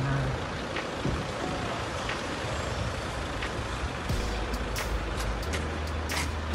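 City street traffic noise: a steady hum of vehicles, with a heavier, deeper engine rumble coming in about four seconds in.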